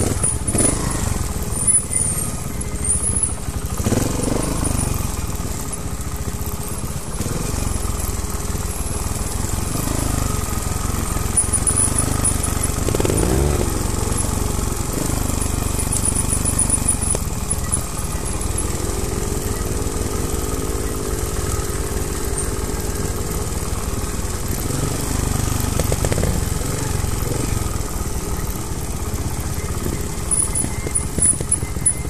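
Trial motorcycle engines running at low revs down a steep trail, a steady rumble. The revs rise and fall briefly a few times, and the engine is held at a steady higher pitch for several seconds past the middle.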